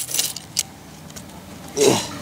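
A metal key scraping and clicking against weathered timber deck boards as it prises cigarette butts out of the gap between them: a few sharp scrapes at the start, a click about half a second in, and a louder scuff near the end.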